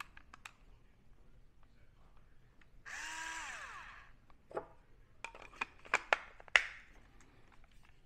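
Electric salt and pepper grinder's small battery motor runs empty for about a second, its whine falling away as it stops. It is followed by a run of sharp clicks and knocks as the plastic body is handled.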